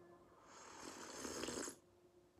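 A person sipping a drink from a glass: a long, hissing, breathy draw that builds over about a second and stops abruptly.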